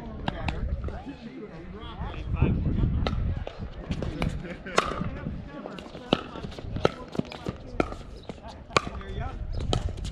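Pickleball rally: sharp pops of paddles striking a hollow plastic pickleball and the ball bouncing on the hard court, roughly once a second and unevenly spaced. A laugh comes at the start and a brief low rumble about two seconds in.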